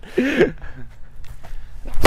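Tennis racquet hitting a tennis ball with a full power swing: one sharp crack at the very end.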